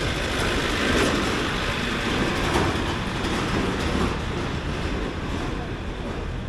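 Yuejin light truck driving past over a cobblestone street: a steady rumble of engine and tyres clattering on the stone setts, easing a little near the end as it moves away.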